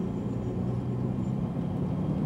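Citroën C5 drive-by-wire concept car heard from inside the cabin as it moves off on light throttle: a steady low engine hum with road noise.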